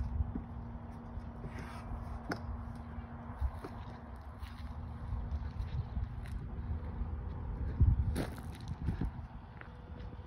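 Outdoor ambience: wind rumbling on the microphone, with a louder gust about eight seconds in, and footsteps on gravel. A faint steady hum stops about seven seconds in.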